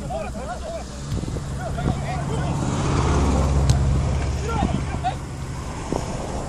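Players' shouts and calls carrying across an outdoor football pitch, over a low engine hum that comes in about a second in, swells for a couple of seconds and then fades.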